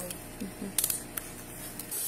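A few short, sharp clicks just before the middle, with a brief murmured "mm" from a voice and quiet room tone.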